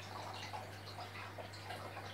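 Faint trickling and dripping of aquarium water over a steady low hum.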